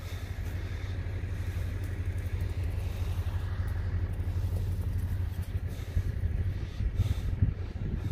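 A steady low rumble with no clear pitch, heaviest in the bass and wavering slightly in loudness.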